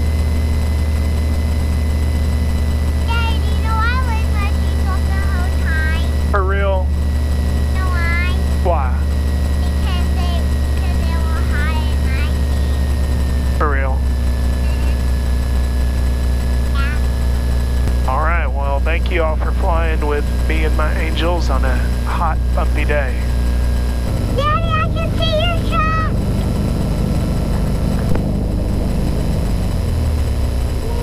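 Piper Saratoga's six-cylinder piston engine running at low taxi power, a steady low drone heard over the intercom, with a thin steady whine of intercom interference. A child's high-pitched voice comes in over it in several spells. The engine note shifts about three-quarters of the way through.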